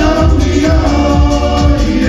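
Group of voices singing in harmony, holding long notes, over an amplified backing track with a steady bass beat.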